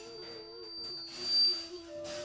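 Flutes holding long, low sustained notes, one note sliding down to the other, over a thin, very high whistle-like tone that swells, peaks past the middle and fades out near the end.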